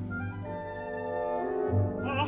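Orchestral opera passage with a solo French horn playing a phrase that climbs in steps over a held low note.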